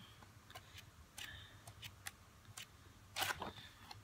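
Sheets of a paper pad being flipped over one by one: faint paper flicks and rustles, with louder rustles about a second in and again near the end.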